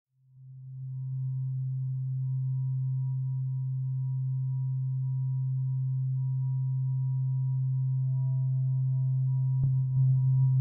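A steady, low, pure electronic drone tone fades in over the first second and holds, with faint higher tones above it, as a meditation music track begins. A short click comes just before the end.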